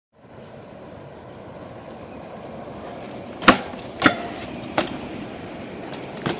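BMX bike rolling over concrete with a steady noise that slowly builds, then three sharp knocks of the bike hitting the pavement as the rider hops it, a little after halfway and twice more within the next second and a half.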